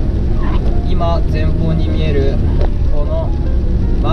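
Steady low rumble of road and tyre noise inside a moving car on a wet road, with a man's voice talking over it.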